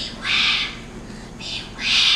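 Two loud, breathy hissing sound effects made with the mouth into a microphone, about a second and a half apart.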